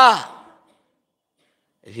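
A man's voice trails off with a falling pitch at the start, then there is over a second of dead silence before his voice starts again near the end.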